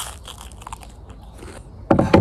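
Crunchy toast being bitten and chewed: a sharp crunch at the start, then faint crackling chews. A louder knock comes near the end.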